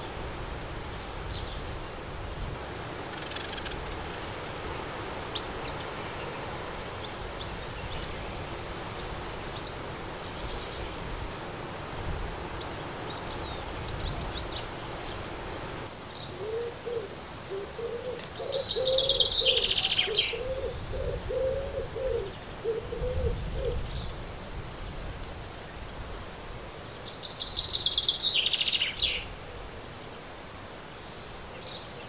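Garden birds calling: scattered short high chirps, then two louder high song phrases, one about two-thirds of the way in and one near the end. From about halfway a low call repeats several times in a row.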